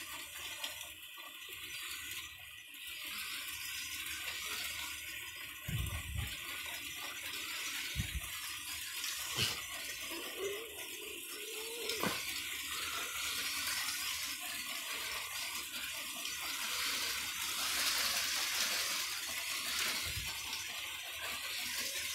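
LEGO 9V trains running on the plastic track of a tall spiral, a steady whirring rush of motors and wheels, with a few short low thumps.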